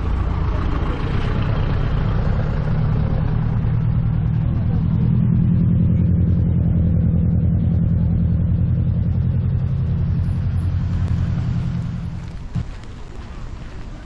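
Minibus engine running close by, a low pulsing drone that swells about five seconds in as the bus pulls away, then fades out near the end.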